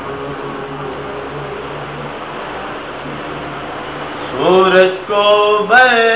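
A man's unaccompanied voice reciting a naat bursts in loudly about four seconds in, with a short break near five seconds. Before that there is only a steady, quieter background hum with faint held low tones.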